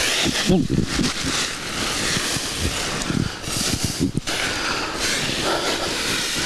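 Dry fallen leaves rustling and crunching continuously as a person wades and kicks through a deep pile of them.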